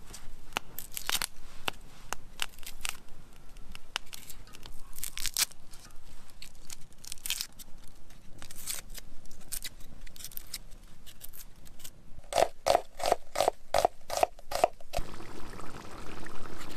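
Dry onion skins crackling and tearing as an onion is peeled with a kitchen knife, the blade scraping under the papery skin. Near the end comes a quick run of about eight knife strokes.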